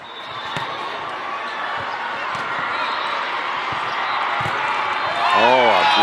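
Crowd murmur in a large sports hall during indoor volleyball play, fading in at the start, with a few sharp knocks of ball contact. Near the end come two short rising-and-falling squeaky cries.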